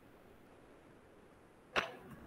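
Faint background hiss, then a single short, sharp click or swish near the end.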